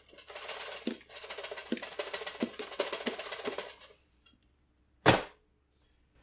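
A two-slot toaster is held upside down and shaken, with crumbled toasted cookie rattling out onto a plate and a few knocks of the toaster body, for about four seconds. About five seconds in there is one sharp knock as the toaster is set back down on the bench.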